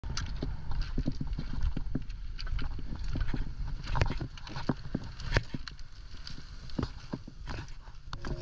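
Footsteps crunching on a beach of rounded pebbles, with stones clacking against each other in an irregular run of sharp clicks, over a steady low rumble.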